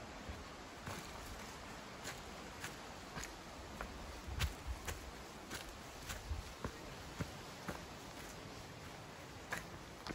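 A hiker's footsteps on a rocky dirt trail, with sharp clicks that fit trekking-pole tips striking rock, one roughly every half second in an uneven walking rhythm.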